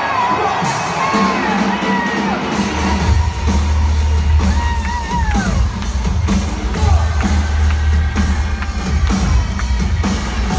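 Arena concert crowd cheering, whooping and whistling. About three seconds in, loud live music with a deep bass rumble and repeated hits comes in under the cheering.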